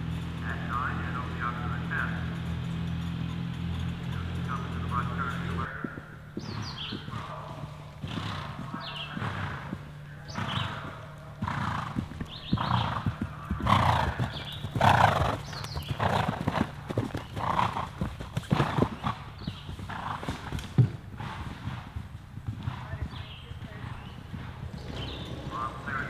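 A low steady engine hum for about the first six seconds, which then stops abruptly. After it, a horse galloping past on turf: irregular hoofbeats and its breathing, loudest around the middle, then fading as it goes away.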